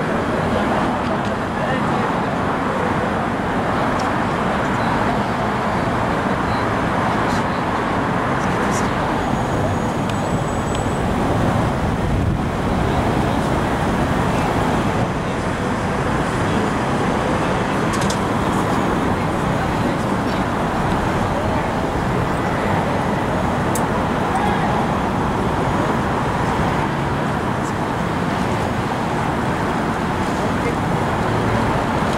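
Steady roadway traffic noise from a busy city boulevard, with indistinct voices mixed in.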